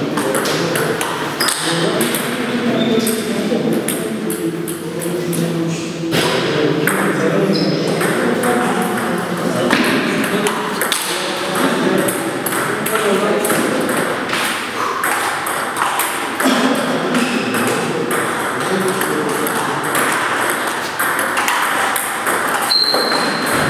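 Table tennis rallies: the ball clicks off rubber paddles and the table over and over, with pauses between points. Voices of other people talk steadily in the background of the large hall.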